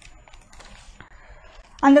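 Faint, scattered light clicks and taps over a low hiss. A woman's voice starts loudly near the end.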